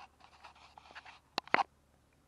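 Handling noise: faint rustling and scratching, then two sharp clicks close together about a second and a half in, as a hand picks up and handles a small machined steel fork end.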